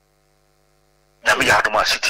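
Faint steady electrical hum, several tones at once, then a voice starts speaking a little over a second in.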